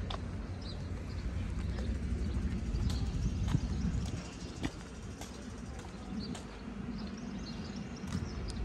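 Footsteps of a person walking over pavement and grass, as scattered soft taps over a steady low rumble.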